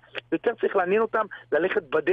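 Speech only: a man talking in Hebrew.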